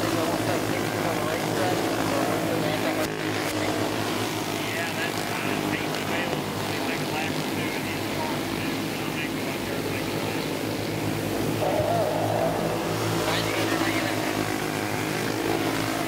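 Flathead go-kart engines running flat out as the karts race around a dirt oval, a steady multi-tone engine drone with no break.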